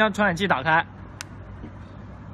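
A man speaking Chinese for the first part, then one short sharp click about a second in, over a faint steady low hum.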